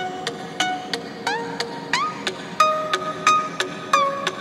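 Background music: a plucked-string melody, notes struck about three a second, some sliding up in pitch.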